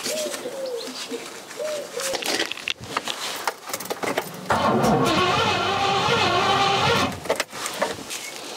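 Starter motor cranking the Rover 4.6-litre V8 for about three seconds, starting about halfway through, with one spark plug removed; the engine does not fire, no petrol reaching the cylinder. A pigeon coos faintly near the start.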